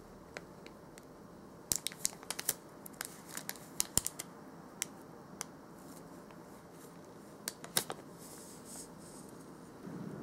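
Thin clear plastic bag crinkling and crackling as a toothpick is worked into it by hand. The sharp crackles come in short clusters, around two to four seconds in and again near the eight-second mark.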